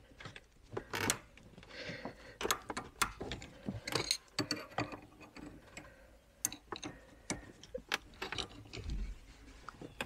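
Steel spanners clinking and scraping as they are levered into a 2010 Volvo XC90's foot parking brake cable adjuster, with irregular metal clicks as the adjuster is spread out to take up slack in a handbrake that was not holding.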